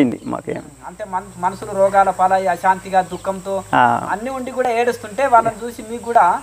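A man talking steadily, with a thin, steady high-pitched trill of crickets running underneath.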